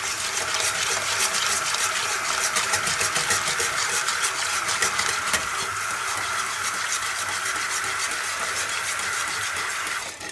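Hot water from a kitchen tap running steadily into a stainless steel pot of curds and whey, while a wire whisk stirs with quick, light ticking. The 60 °C water is topping up the drawn-off whey, stirred in so it doesn't cook the curd in one spot.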